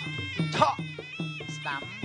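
Traditional Kun Khmer ring music: a reedy sralai oboe holding a wavering melody over quick, steady drum strokes, about four to five a second. Two brief shouts cut across it, one about a quarter of the way in and one near the end.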